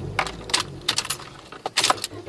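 Car keys jingling and clicking in the ignition switch as the key is handled and turned: a string of short metallic clicks over a low steady hum.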